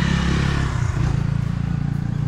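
A motor vehicle's engine running close by: a steady low hum with a hiss over it.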